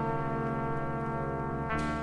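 Background music: a sustained chord of many held tones, which moves to a new chord near the end.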